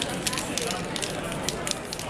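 Aerosol spray-paint can spraying in several short hissing bursts.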